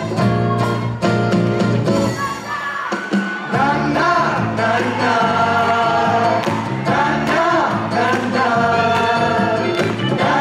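Live song performed by a band and a large vocal ensemble: the band plays chords over a regular beat, the bass drops out briefly about three seconds in, and then many voices come in singing together with the band.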